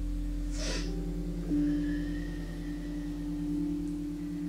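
Soft background music of held, sustained notes, with a new note coming in about one and a half seconds in. Near the start there is a short breathy hiss.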